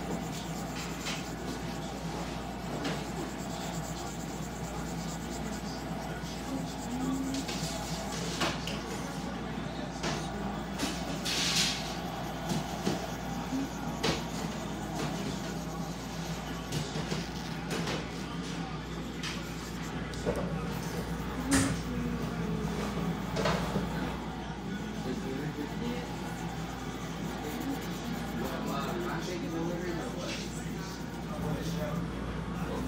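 Coloured pencil rubbing on paper over a steady room hum, with a few short knocks and clicks and a brief hiss about eleven seconds in.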